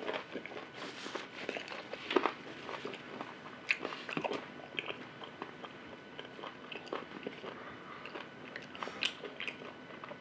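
Close-up mouth sounds of a person eating beef ribs and lettuce: biting and chewing with irregular wet clicks and crunches. The loudest bite comes about two seconds in.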